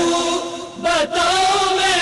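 Male voice chanting a Muharram lament (nauha) in long, held melodic notes. It breaks off briefly a little before the middle, then carries on.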